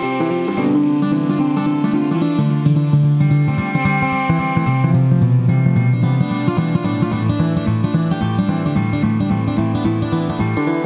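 Instrumental ambient new-age music: held chords layered with a busy stream of short notes, steady in loudness throughout.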